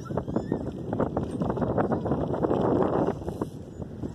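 Footsteps of the person filming on dry grass and dirt, a quick run of scuffs and crunches, mixed with wind on the microphone; the noise eases about three seconds in.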